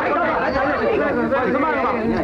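Several people talking at once: an unbroken babble of overlapping voices in a small group.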